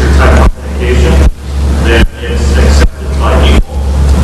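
A man asking a question away from the microphone, his voice faint under a loud low hum; the hum's level drops sharply and swells back up a little more than once a second.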